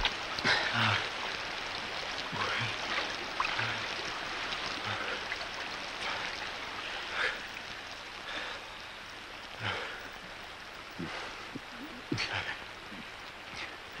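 Steady rush of flowing river water, with men breathing hard and giving short laughs and grunts every second or so.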